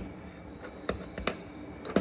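A few light clicks as small stainless helicoil thread inserts and the insert tool are handled on a workbench, over faint room noise.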